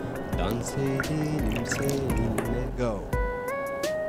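Background music, with water being poured in a thin stream from a small stainless-steel pan into a small ceramic bowl.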